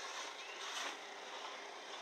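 Faint outdoor background noise: an even hiss with a slight swell just under a second in and no distinct event.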